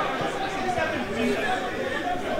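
Steady chatter of a football crowd: many spectators talking and calling at once, with no single voice standing out.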